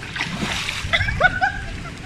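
Pool water splashing and sloshing as people wade through it, with a short high voice calling out about a second in.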